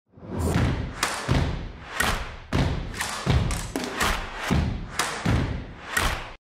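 Percussive title-sequence music: a string of heavy, deep-bass thumps, roughly two a second.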